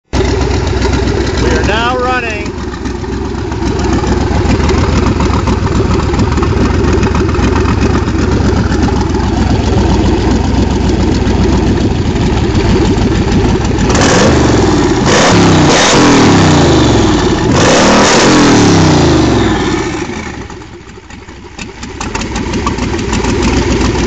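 Banks twin-turbocharged hot rod engine running steadily, then revved several times over the middle of the stretch, the pitch sweeping up and down, before it drops back and settles to a steady run.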